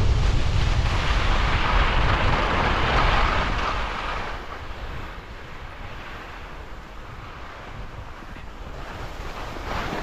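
Wind buffeting the microphone over the rush of skis sliding and scraping on firm snow. Loud for the first four seconds, it drops to a quieter rush in the middle and builds again near the end as the skier heads down the steep face.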